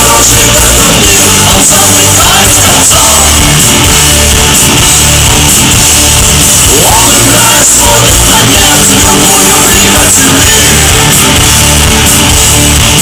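Rock band playing live, with electric guitar over bass and drums, loud and without a break; a rising pitch glide comes about seven seconds in.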